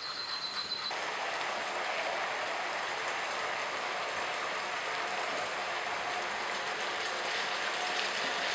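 Garlic, chile and a little water sizzling and bubbling in hot oil in a frying pan, a steady crackling hiss as it is stirred with a spoon.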